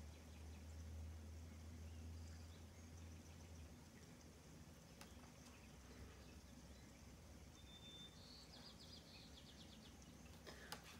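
Near silence: room tone with a faint low hum that stops a few seconds in, and a few faint clicks.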